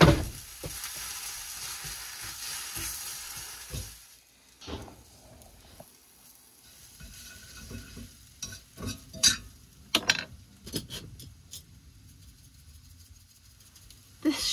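Egg and maple blossoms frying in a pan with a steady sizzle. It opens with a sharp crack as an egg is broken with a knife. After about four seconds the sizzle drops away, and a utensil taps and clinks against the pan in a run of separate clicks as the mixture is stirred.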